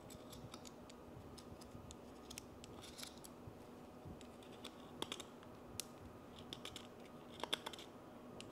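Faint, scattered clicks and snips of a small cutting tool trimming the rim of a clear plastic coffee dripper's cut-open bottom, with a few sharper snips from about five seconds in.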